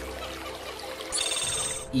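Edited soundtrack effects: a low drone fades over the first second, then a high, fast-warbling electronic trill sounds for most of a second near the end.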